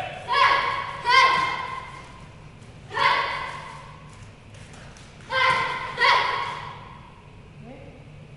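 A boy's taekwondo kiai shouts: five short, sharp yells, each starting suddenly and trailing off, punctuating a combination of kicks and punches. Two come close together at the start, one about three seconds in, and two more a little after five seconds.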